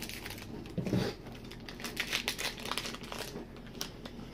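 Plastic foil wrapper of a Pokémon trading card booster pack crinkling and tearing as it is opened by hand, with a louder rustle about a second in.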